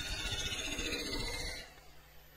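Hollowing tool cutting inside a wood blank spinning on a lathe, a rough scraping hiss that stops about a second and a half in.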